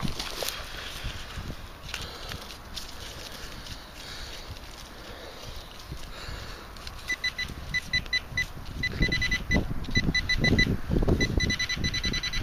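A handheld metal-detecting pinpointer beeping in fast pulses, a few beeps a second in several runs from about halfway in, as it is probed in a dig hole: it is signalling metal in the soil. Soil scraping and rustling as the hole is worked.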